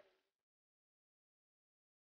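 Near silence: a faint sound dies away in the first half-second, then the soundtrack is completely silent.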